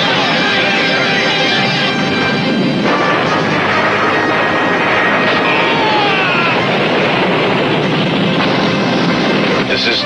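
Cartoon battle soundtrack: loud, continuous dramatic music mixed with action sound effects, including vehicle engine noise and a few falling-pitch zaps about five to six seconds in.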